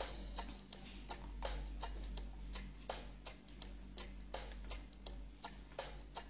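Quiet, irregular light clicks, about three a second, over a faint steady low hum.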